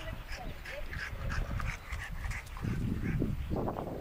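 A dog making a string of short vocal sounds, denser and louder from about halfway through.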